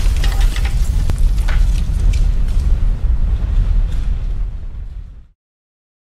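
Logo-intro sound effect of an explosion and a wall shattering: a deep, loud rumble with scattered clattering debris hits. It fades away and stops dead a little after five seconds in.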